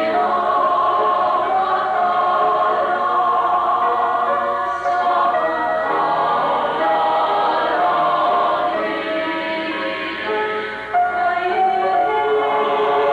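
Mixed choir of men and women singing in harmony, with a short break between phrases about eleven seconds in.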